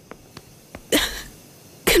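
A woman's single short, breathy vocal burst about a second in, with a few faint clicks before it.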